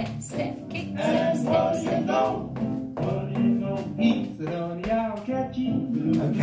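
Recorded swing jazz playing, with a singer over the band.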